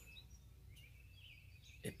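Near silence with faint bird chirps and a low steady hum.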